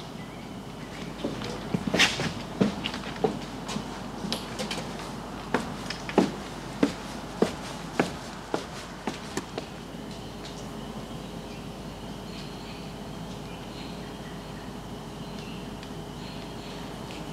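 A series of about a dozen sharp knocks, roughly one every half second and unevenly spaced, stopping about ten seconds in. After that there is only a steady faint background.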